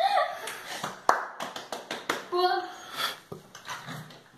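Short snatches of a voice, broken up by sharp taps and clicks.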